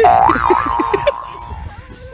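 Cartoon boing sound effect: a loud springy tone that wobbles up and down in pitch and fades over about a second and a half. Laughter runs underneath it during the first second.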